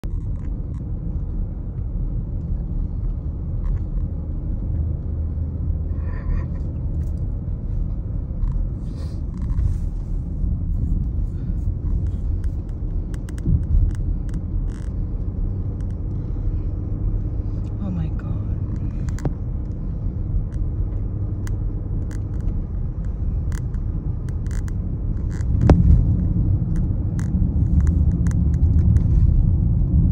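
Inside a moving car's cabin: the steady low rumble of tyres and engine on a rough paved road, with scattered small clicks and one louder knock a few seconds before the end.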